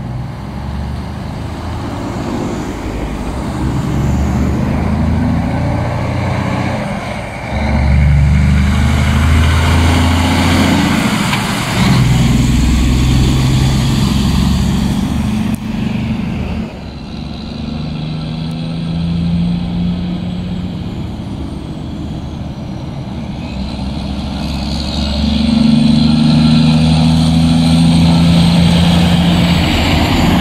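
Heavy diesel tractor-trailers hauling snow-loaded dump trailers drive past. Their engine note climbs and drops in steps as they pull away, and is loudest near the end as a truck passes close.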